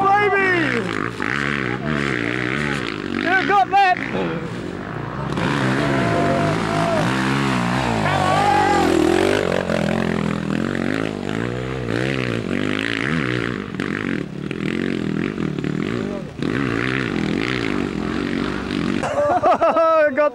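Dirt bike engine revving hard under load, its pitch repeatedly climbing and falling away as the rider fights up a muddy slope, with one deep drop and recovery about halfway through.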